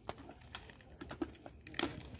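Dogs eating rice from steel plates: irregular light clicks and smacks of mouths and food against the metal. The sharpest click comes near the end.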